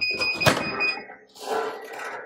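Clamshell heat press finishing its cycle: the timer gives a steady high beep that stops about a second in, and half a second in the handle is pulled and the press unlatches with a loud clack. The top platen swings open, followed by rustling of the butcher paper.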